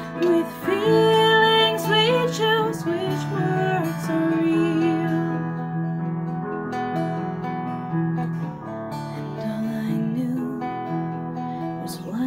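A Seagull fretted string instrument strummed and picked in a slow folk ballad. A woman sings a wavering held line over it for the first few seconds; after that the instrument plays on alone.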